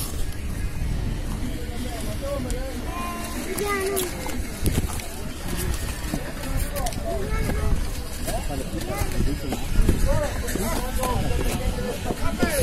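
Indistinct voices in the background with music playing, over a steady low rumble.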